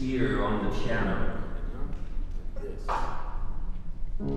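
Speech only: a man talking into a handheld microphone in a few short phrases with a pause in the middle.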